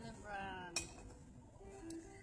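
A spoon clinking against a ceramic soup bowl: one sharp clink about three quarters of a second in and a fainter one near the end.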